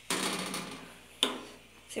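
Glass cooktop lid of an Esmaltec Ágata gas stove being lifted open on its hinges: a sudden scrape-and-rattle that fades out, then a second, shorter one about a second in as the lid comes up to rest.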